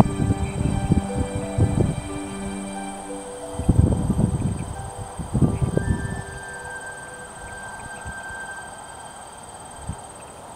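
American bittern giving its deep, gulping pumping call in three bouts, the last about halfway through, over soft background music.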